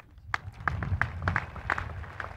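Scattered audience clapping, separate claps a few to the second, over a low rumble.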